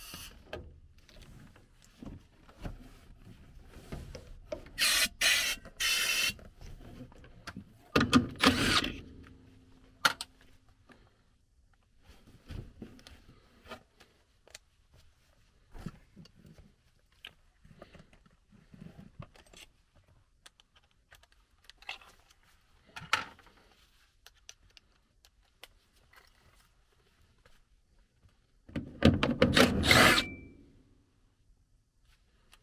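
Intermittent handling noise of hands and tools working on a furnace's plastic condensate drain pipes: scattered clicks, rubs and knocks. There are short, sharp noisy bursts about five seconds in, a louder clatter near eight seconds, and another at the end.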